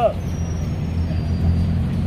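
Road traffic: the low, steady rumble of a vehicle engine running close by on the street.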